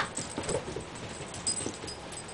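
Pet playing with a toy: light metallic jingles that come and go, with small knocks and scuffles.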